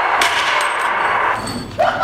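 Rapid automatic-gunfire sound effect in one long, loud burst that stops about three-quarters of the way through.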